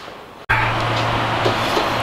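A steady machine noise with a low, even hum, starting suddenly about half a second in and running on at constant loudness.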